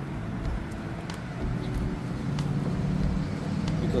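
A car engine running close by, its low steady hum building through the second half, over a low outdoor rumble, with a couple of faint light clicks.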